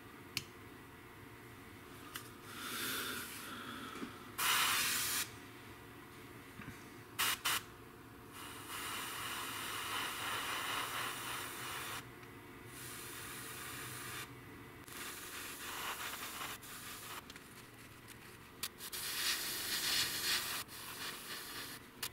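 Gravity-feed airbrush spraying paint in repeated bursts of hiss, about six of them, from half a second to about three seconds long, with short pauses as the trigger is released.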